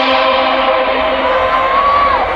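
Live concert intro music over a large PA: a held chord slowly fading, with a single long high note rising gently from about halfway through and dropping off at the end.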